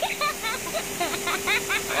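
Mostly speech: voices talking that the transcript did not catch, over a steady hum and a faint high hiss.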